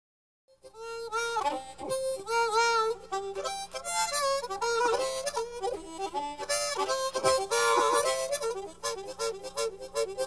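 Solo harmonica played with the instrument cupped in both hands, starting about half a second in. Sustained notes with quick bends that dip down in pitch and come back, then a run of fast, rhythmic repeated notes near the end.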